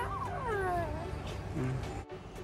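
An 11-month-old baby vocalizing, its voice gliding downward in pitch through the first second.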